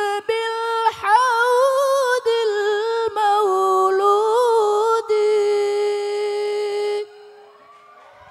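Solo young male voice singing an unaccompanied, ornamented sholawat melody into a microphone, with wavering runs that end on a long held note. The note cuts off about seven seconds in.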